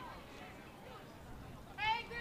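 Faint open-air field background with distant voices, then near the end a short, high-pitched shouted call that rises in pitch, typical of a player or spectator yelling during a soccer match.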